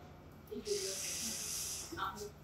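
A person's voice making a drawn-out hiss, about a second long, under faint murmured speech.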